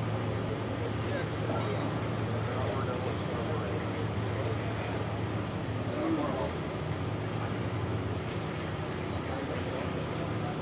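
Indistinct chatter of a group of people standing outdoors over a steady low hum.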